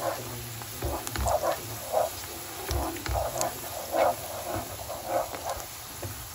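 Wooden spoon stirring chopped onions frying in oil in a pan, with a scraping stroke about every half second over a light sizzle.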